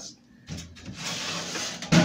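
A metal toaster-oven case being shifted on a tabletop: a scraping rustle of about a second and a half, ending in a thump.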